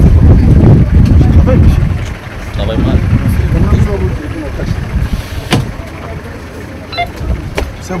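Scattered voices of people close by over a loud low rumble that fades after about two seconds, with a few sharp knocks later on.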